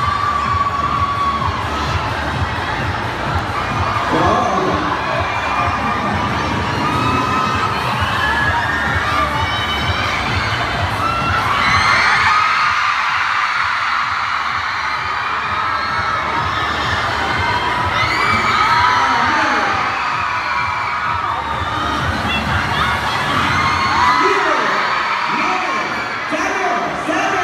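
Crowd of fans cheering and screaming, many high-pitched voices overlapping. A dense low rumble runs underneath and thins out about halfway through.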